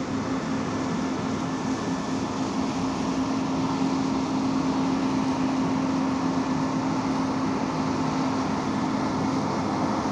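New Holland CR8.90 combine running under harvesting load as it drives past, a steady drone with a constant hum, growing a little louder about four seconds in as it comes nearer.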